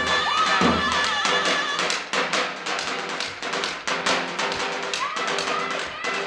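Zurna (double-reed folk shawm) playing an ornamented, wavering melody over deep davul drum beats. The deep beats stop about two seconds in, leaving the reed tones over lighter taps.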